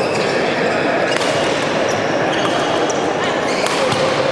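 Badminton doubles rally in a large hall: a few sharp racket strikes on the shuttlecock and short squeaks of shoes on the wooden court floor, over steady crowd chatter.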